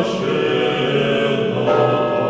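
A choir singing slow, sustained chords.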